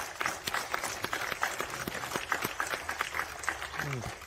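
A congregation applauding, many hands clapping irregularly, thinning out near the end.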